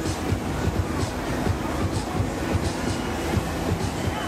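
A Polyp octopus fairground ride running at speed, its mechanical rumble mixed with loud fairground music.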